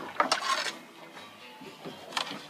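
Light clicks and knocks of bait and tackle being handled on a boat's plastic bait-cutting board, the sharpest in the first half-second, then only faint handling noise.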